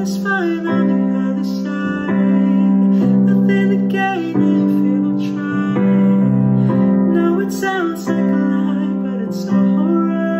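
A man singing a slow ballad over sustained piano chords, his voice sliding between long held notes.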